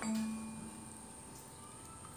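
A soft, pure held tone that fades away over about a second, leaving only a faint steady hum.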